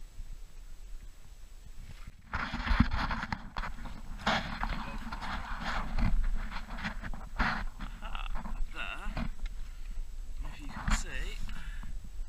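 Irregular splashing and rustling as kelp and shallow rock-pool water are pushed aside by hand, starting about two seconds in.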